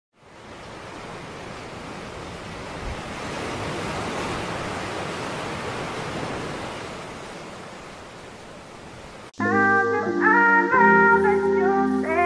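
Steady rushing water noise that swells and then eases off, cut off abruptly about nine seconds in by loud music: a moving melody over held low notes.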